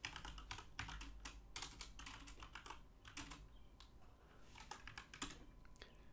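Typing on a computer keyboard: quiet, irregular key clicks, several a second, thinning out in the middle and picking up again near the end.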